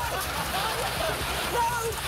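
A mass of plastic ping-pong balls tumbling and rattling as they are shovelled and spilled, with voices shouting and laughing over it; one voice cries "No!" near the end.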